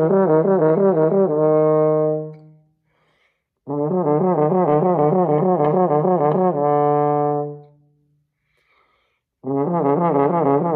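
French horn playing a slurred warm-up exercise, alternating evenly between two neighbouring overtones in a steady, connected flow. Each phrase settles on a held note that fades out. Two phrases are heard with a short breath between them, and a third begins near the end.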